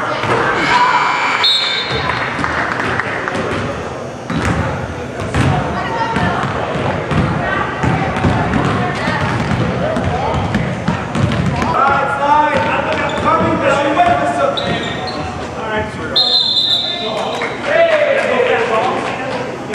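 Basketball bouncing on a hardwood gym floor during a game, with many short impacts and voices of players and spectators echoing in a large hall. A high steady tone sounds briefly about a second in and again near the end.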